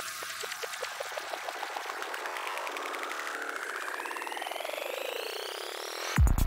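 Psychedelic trance build-up with the kick and bass cut out: a synth sweep rises steadily in pitch over the last few seconds while a rapid percussive roll speeds up.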